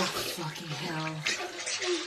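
Bath water splashing and sloshing in a bathtub as a man in the bath moves, with a sudden splash right at the start. A man's low voice speaks briefly in the middle.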